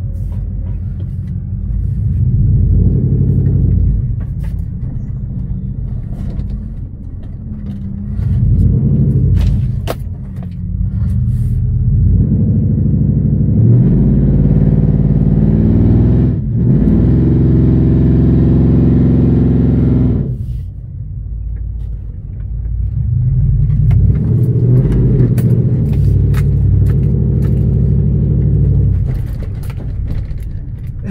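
A vehicle's engine heard from inside the cab, revving up and easing off in several surges as it drives a rough dirt trail. The longest and hardest pull comes in the middle, where a rushing noise rises with it.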